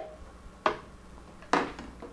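Two light knocks from kitchenware being handled on a countertop, about a second apart, with the blender switched off.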